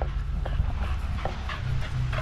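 Australian cattle dog running across grass, with short irregular scuffs and taps of movement, over a steady low rumble of wind on the microphone.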